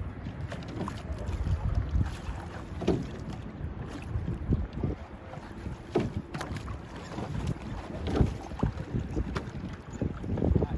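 Wind buffeting the microphone, a gusting low rumble, with a few brief knocks at intervals of a few seconds.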